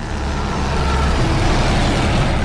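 A loud rushing rumble with a heavy low end, swelling through the first half and staying up.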